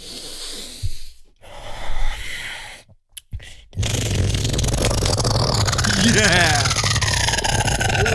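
Solo beatboxing: breathy, hissing build-up sounds broken by short pauses, then about four seconds in a loud drop with a heavy sustained bass and a sweeping, growling vocal line over it.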